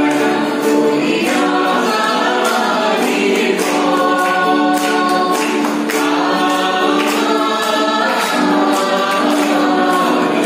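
A mixed group of men and women singing a song together in chorus, accompanied by two acoustic guitars being strummed steadily.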